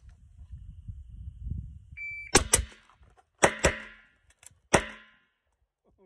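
Shot timer start beep, then a fast string of shots: two suppressed AR-style rifle shots in quick succession, two pistol shots about a second later, faint reload clicks, and a final pistol shot about a second after that. The string from beep to last shot lasts about 2.8 seconds.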